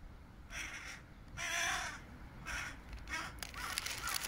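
A bird's harsh cawing calls, four in all, the second one the longest and loudest.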